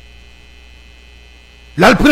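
Low, steady electrical hum in the audio feed during a pause in speech; a man's voice starts again near the end.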